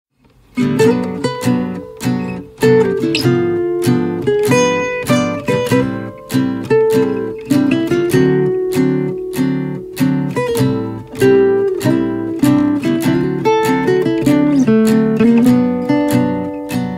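Background music: acoustic guitar strummed in a steady rhythm, with chords that ring out and fade between strokes, starting about half a second in.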